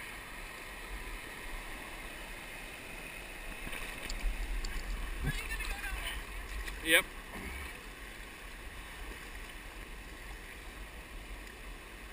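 Steady hiss of river water running over a rock shoal, with a low rumble on the microphone from about four seconds in until about seven and a half.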